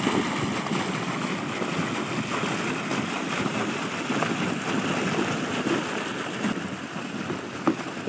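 Irrigation water gushing steadily out of the open end of a black plastic pipe onto a flooded, muddy field.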